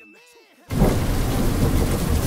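Heavy rain with a low rumble of thunder, coming in suddenly about two-thirds of a second in after a quiet moment with a faint high tone fading out.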